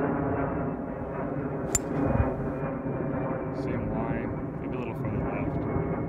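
A hybrid club strikes a golf ball off the tee, giving one sharp click about two seconds in. It sits over steady wind noise on the microphone.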